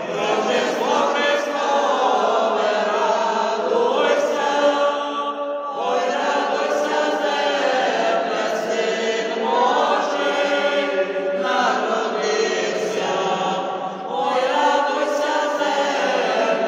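A small mixed ensemble of women's and men's voices singing a Ukrainian Christmas carol (koliadka) unaccompanied, in long sustained phrases with brief breaks between them about six and fourteen seconds in.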